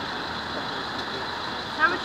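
Steady background noise of road traffic on a city street, with a brief burst of a voice near the end.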